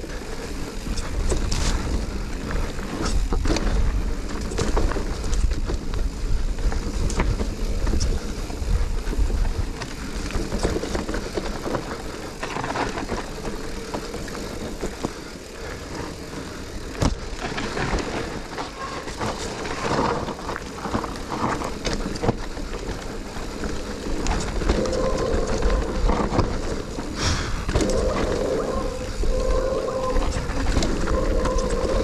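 Mountain bike ridden fast down a dirt woodland trail: steady tyre and wind noise on the bike-mounted camera's microphone, with the bike rattling and knocking over bumps. A steady buzzing tone joins near the end.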